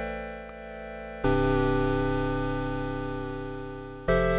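SoundSpot Union software synth playing a synthwave pluck/pad patch. Held chords fade slowly, and a new chord strikes about a second in. An LFO on the wavetable oscillator's phase and fine tune gives the tone a slight analog-style pitch drift.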